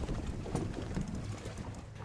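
Ambient sound aboard a fishing boat on the water: a low steady hum with wind noise on the microphone and a few light knocks.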